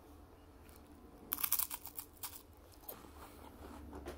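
A bite into a Great Value strawberry creme wafer cookie and chewing. A quick cluster of crisp crunches comes about a second in, followed by a few softer crunches.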